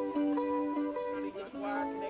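Music: a guitar playing a line of sustained single notes that step from pitch to pitch every few tenths of a second.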